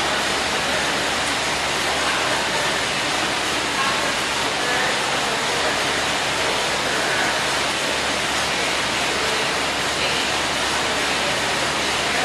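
Steady rushing noise of fans running in a gym, even and unbroken, with faint voices in the background.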